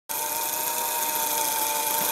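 A steady, high-pitched whirring noise with a constant tone running through it, starting abruptly.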